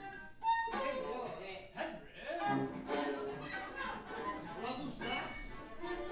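Freely improvised viola and cello playing, bowed, with gliding and scraping lines and a sharp attack about half a second in. A voice is heard over the strings.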